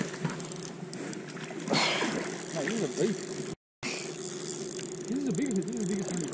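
Faint, indistinct low voices over a steady hum, with a brief dropout in the sound a little after halfway.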